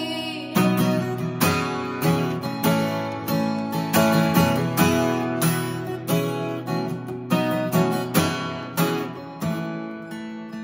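Solo acoustic guitar strummed in a steady rhythm, chords ringing between the strokes, with no voice: an instrumental break in a country song.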